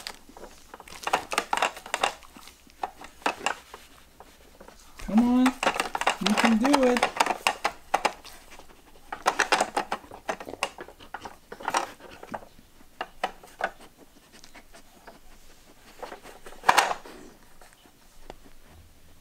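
Hard plastic pieces of a Trixie Move2Win dog puzzle board clicking, knocking and rattling irregularly as a dog noses and paws at its sliders and drawers, with one sharper click near the end. A brief pitched vocal sound rises and falls about five seconds in.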